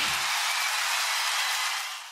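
A steady hissing sound effect from a TV commercial, fading out near the end.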